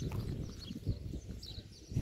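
Wind buffeting the phone's microphone as a rough, uneven rumble, with small birds chirping in short high calls now and then.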